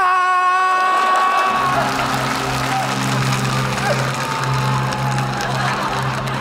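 A man's long, drawn-out wailing cry, held on one pitch, trails off in the first second or two. Then background music with a steady low note plays under audience noise.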